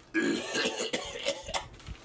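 A person coughing and clearing her throat in a few harsh bursts over the first second and a half.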